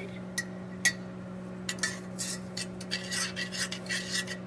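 Metal spoon stirring sugar and butter in a stainless steel saucepan, with scattered scrapes and clinks against the pan. A steady low hum runs underneath.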